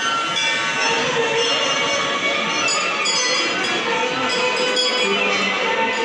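Temple bells ringing on and on, a dense metallic ringing with fresh strikes coming in now and then, over the chatter of a crowd of worshippers.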